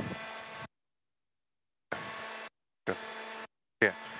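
Steady machinery hum with several fixed tones, heard in three short stretches that cut in and out abruptly, as a video call's noise gate opens and shuts. A man says "yeah" near the end.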